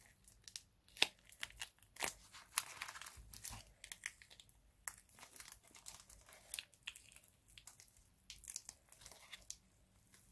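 Sellotape and cured silicone being peeled off a foam-board mould box by gloved hands: faint, irregular crinkling and tearing with scattered sharp crackles, the loudest snaps about one and two seconds in.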